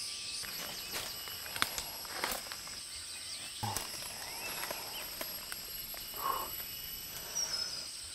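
Rainforest ambience: insects keep up a steady high-pitched drone, with a few light clicks and rustles of twigs and leaves and a brief faint chirp about six seconds in.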